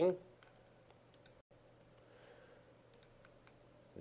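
A few faint computer mouse clicks over quiet room tone with a low electrical hum, as a software menu is worked to open a dialog.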